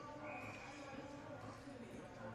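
Faint ice-rink arena ambience during a stoppage: a low, steady background of distant crowd and building hum, with a brief faint high tone near the start.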